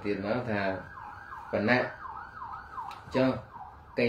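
A man's voice reading aloud in short phrases, with a siren in the background: a quick rising-and-falling yelp, about four to five cycles a second, heard most clearly between the phrases in the middle.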